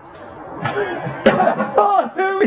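A man's voice calling out excitedly, with a chuckle, starting a little over a second in, after a couple of short sharp knocks.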